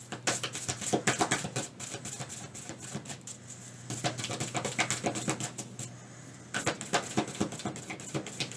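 A deck of oracle cards shuffled by hand: a quick run of light card flicks and slaps, stopping briefly twice before picking up again.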